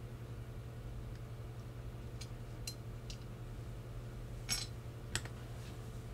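Thin sheet-metal RF shield can being pried off a circuit board with a small screwdriver: a few light metallic clicks, then a sharper clink about four and a half seconds in and another just after.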